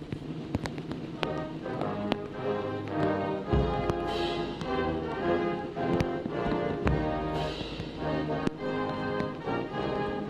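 A band playing a national anthem, sustained chords with drum beats and two cymbal crashes.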